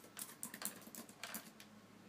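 Faint typing on a laptop keyboard, a quick run of key taps that stops about one and a half seconds in.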